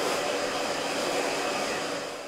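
Hand-held hair dryer blowing on hair, a steady airy rush with a faint whine that fades away near the end.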